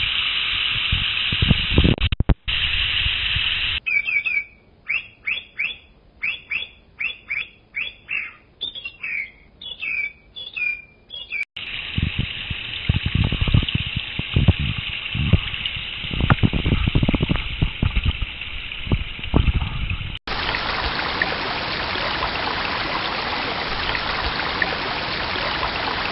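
Small mountain stream rushing over rocks, with low thuds of buffeting on the microphone. In a quieter stretch in the middle, a bird repeats a short call about twice a second for several seconds. The last six seconds hold louder, brighter rushing water.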